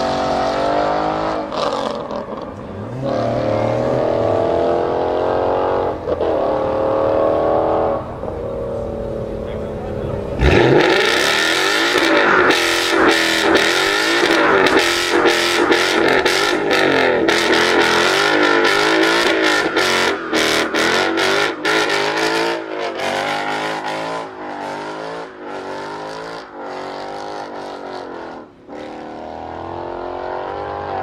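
Ford Mustang GT's V8 revving, its pitch rising and falling for several seconds. About ten seconds in it launches into a burnout: loud tyre squeal over the engine held at high revs for about ten seconds. Then the revs fall as the car pulls away.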